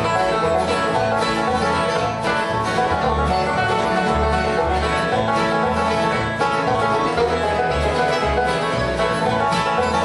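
Bluegrass band playing an instrumental passage: a banjo picking a fast lead over strummed acoustic guitar and a steady, even bass pulse.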